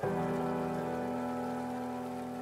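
Tabletop waterfall fountain trickling steadily under soft, sustained music chords.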